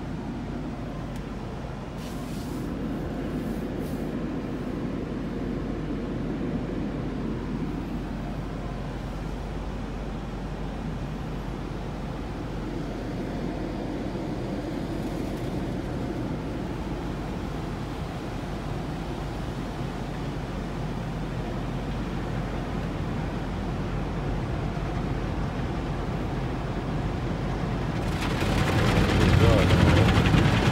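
Heard from inside the cabin of a Jeep SRT8 going through an automatic tunnel car wash, a steady low rumble from the car wash machinery and the idling engine. About two seconds before the end, a much louder rush of water spray and brushes hitting the vehicle begins.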